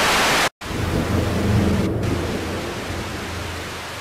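TV-static noise sound effect: a loud half-second burst of bright hiss cuts off abruptly, then a lower, rumbling static starts and slowly fades.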